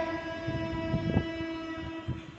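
A single steady held musical note with its overtones, sounding through the hall's PA as a drone. A couple of soft low knocks come about a second in.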